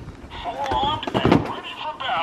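A high-pitched, wavering voice-like sound without clear words, with sharp clicks of plastic toy packaging being handled.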